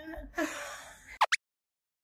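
A breathy laugh trailing off, followed by a quick rising swoosh, after which the sound cuts out completely at an edit.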